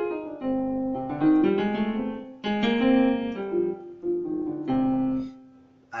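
Yamaha portable keyboard in a piano voice, played with both hands: a run of notes and chords, each struck and left to ring, the last dying away about five seconds in.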